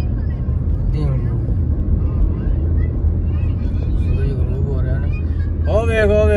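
Steady low rumble of a moving car's road and engine noise heard inside the cabin. Voices talk over it now and then, loudest near the end.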